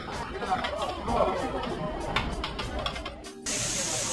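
Indistinct voices chattering, with scattered light clicks. About three and a half seconds in, the sound cuts off abruptly and a steady hiss takes over.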